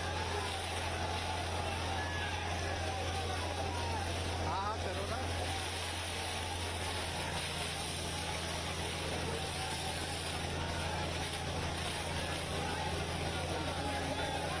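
Police water cannon spraying a crowd: a steady rushing hiss of the water jet over the continuous hum of the cannon truck's engine and pump, with many people shouting throughout.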